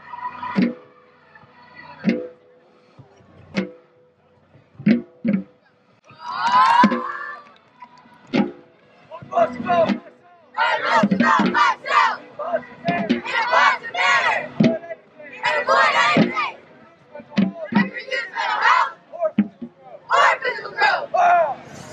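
A group of young martial arts students shouting in unison, phrase after phrase, from about ten seconds in. Before that come a few scattered short sharp sounds and one loud call about six seconds in.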